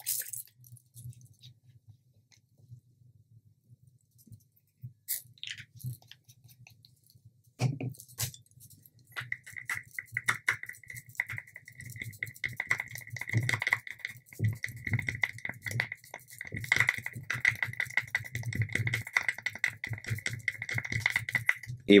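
Mixing resin in small clear plastic cups: a stirring stick scraping and ticking against the plastic in a dense run of small clicks, starting about seven seconds in. A steady high-pitched tone runs under it from about nine seconds in.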